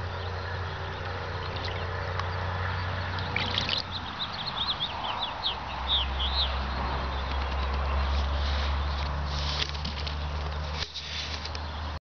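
A small bird chirping a quick run of about a dozen short notes from about three and a half to six and a half seconds in, over a steady low rumble.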